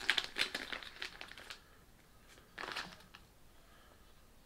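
Thin plastic packet crinkling as fingers rummage inside it to pull out marabou plumes, in crackly bursts over the first second and a half and again briefly near three seconds.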